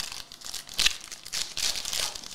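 Foil wrapper of a basketball trading-card pack being torn open and crinkled by hand: a quick run of irregular crackles, loudest about a second in and again near the end.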